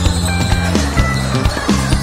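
Loud music with a steady beat and a held bass line.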